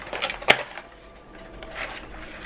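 A cardboard pregnancy-test box being opened by hand: one sharp snap about half a second in, then faint rustling and small clicks of the flap and packaging.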